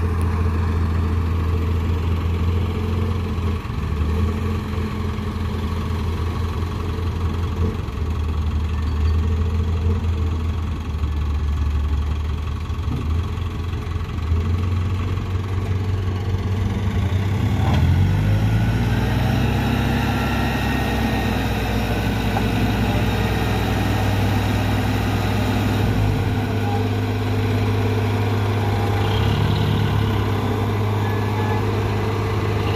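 Hino Dutro dump truck's diesel engine idling, then revving up about two-thirds of the way through and holding at the higher speed while the hydraulic hoist lifts the loaded tipper bed.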